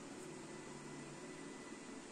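Vacuum cleaner running steadily on the floor below, heard faintly through the floor as an even noise.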